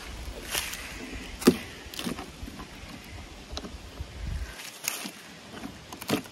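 Scattered small knocks and scrapes of a hand working a small geocache container out of a crack in a weathered wooden beam, the sharpest knock about one and a half seconds in.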